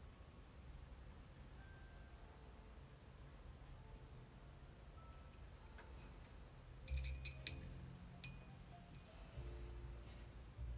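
Soft background music, with a quick cluster of bright, ringing clinks about seven seconds in and a single clink just after eight seconds.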